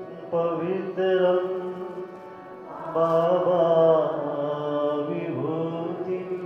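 Devotional chanting sung in held, melodic phrases over a steady low drone, the longest phrase near the middle.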